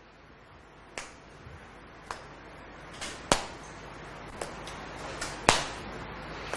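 Footsteps on a hard floor as a person walks slowly: sharp, short taps about once a second, over faint room hiss.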